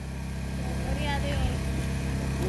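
A steady low hum, with a faint distant voice briefly about a second in.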